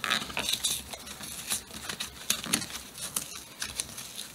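Hands handling and opening a cardboard collector box, with irregular light rustling and small taps and crinkles of the cardboard.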